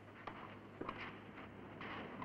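Faint knocks of a tennis ball off rackets and the grass during a doubles rally that starts with a serve: a few separate sharp hits, two of them close together just under a second in, over the steady low hum and hiss of an old film soundtrack.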